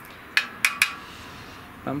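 A thin metal rod being laid down on a workbench, giving three quick light clinks in under half a second.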